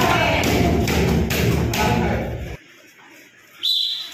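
Kicks landing on padded kick shields: several dull thuds over background voices in a hall. The sound cuts out abruptly about two and a half seconds in, and a short high tone sounds near the end.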